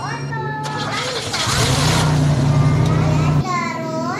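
A car engine running for about two seconds, a steady low hum that cuts off abruptly, with children speaking before and after it.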